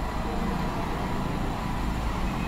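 Steady low background rumble with a light hiss, with no distinct events.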